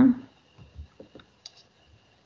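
A few faint, scattered computer clicks as the screen is shared again, heard over a video-call line with a faint steady high hum; a spoken word trails off at the very start.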